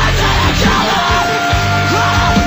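Punk rock band playing: drums, electric guitars and a yelled lead vocal over a loud, dense mix.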